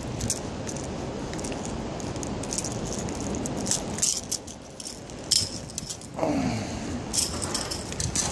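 Light jingling rattle of a lipless crankbait and its treble hooks shaken in the hand, with scattered small clicks.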